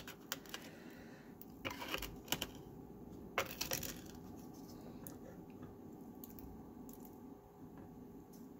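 Faint, scattered small metallic clicks and light scrapes: a small metal spoon working crushed opal and ashes into the channel of a stainless steel ring.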